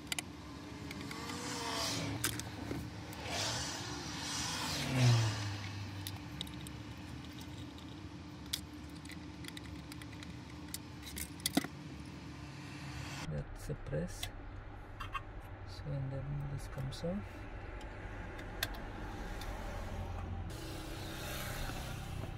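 Small metallic clicks and clinks of a screwdriver and screws as a thin sheet-metal cover is unscrewed and lifted off the back of a car stereo head unit, over a low steady hum.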